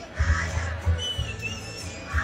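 A thin, high whistle-like tone, wavering slightly, heard for under a second midway through. Under it are faint background music and low rumbling.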